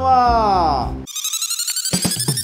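A man's voice, drawn out and falling in pitch, cuts off abruptly about halfway. A high electronic ringing tone with rising sweeps follows, like a phone ringtone, and near the end the rhythmic beat of a song's backing music comes in.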